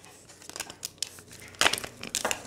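Tarot cards being handled: soft rustling and scattered light clicks, with a louder cluster about one and a half seconds in.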